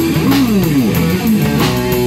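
Live punk rock band: distorted electric guitar, bass guitar and drum kit playing loud. The guitar notes bend and slide down and back up in pitch.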